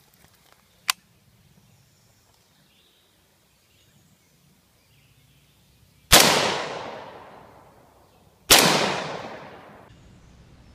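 Colt HBar AR-15 rifle firing two shots about two and a half seconds apart, each followed by a long echo dying away over about two seconds.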